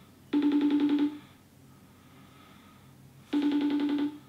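Outgoing phone video-call ringback tone from the phone's speaker: two rings, each under a second and pulsing quickly, about three seconds apart, while the call waits to be answered.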